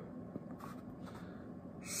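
Faint handling, then near the end a steady airy hiss of breath blown through the stem of a new sandblasted billiard tobacco pipe, clearing pipe dust out of its bore.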